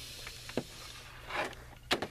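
A low steady electrical buzz from fluorescent lights, with a few small handling clicks and knocks, a short rustle partway through, and a sharper click near the end.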